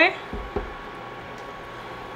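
Thick flour-and-salt play dough paste being stirred with a silicone spatula in a stainless steel saucepan, with two dull knocks just after the start.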